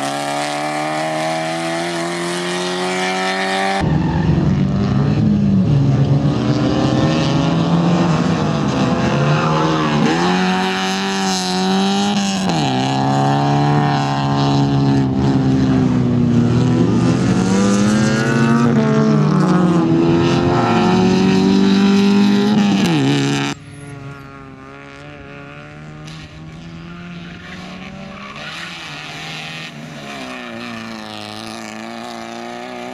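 Toyota Corolla hatchback rally car's engine revving hard, its pitch climbing and dropping repeatedly through gear changes and lifts of the throttle on a twisty course. The sound jumps at cuts about 4 s in and near 23 s in, after which the engine is quieter and farther off.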